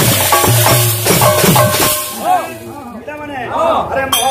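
Live kirtan music: a drum and jingling hand percussion play a quick rhythmic beat, which breaks off about halfway. A single voice then carries on alone with long, rising-and-falling glides in pitch.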